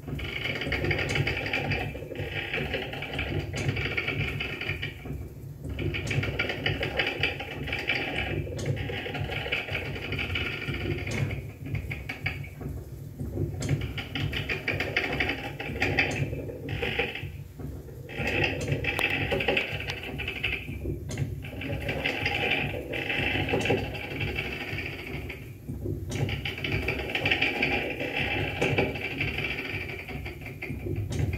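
Live experimental noise music from an electronic rig through a PA speaker: a dense, gritty texture with a fast mechanical chatter, dipping briefly every few seconds.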